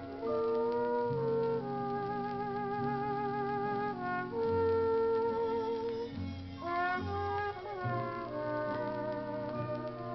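Big-band dance orchestra playing the instrumental break of a slow 1940s ballad, with sustained notes and vibrato and a rising run of notes about two-thirds of the way through. Played from a 1947 shellac 78 rpm record.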